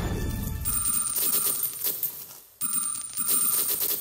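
Metal counters clattering as they drop off the ledge of a coin-pusher game machine into the tray, with a steady electronic ringing tone over parts of it. The clatter dips briefly about two and a half seconds in, then resumes.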